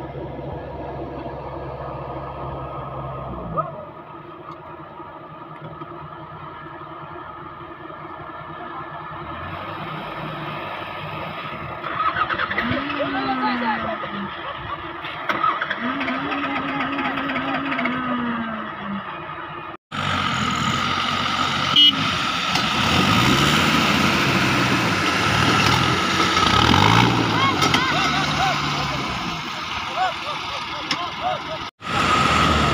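An off-road 4x4's engine revving up and down in repeated swells as the vehicle climbs a steep dirt slope on a winch cable, the revs growing louder and more frequent after a sudden break about two-thirds of the way through.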